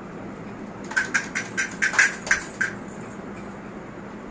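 A handheld beaded baby rattle being shaken: a quick run of about eight bright rattling clicks over a second and a half, starting about a second in, over a low steady background.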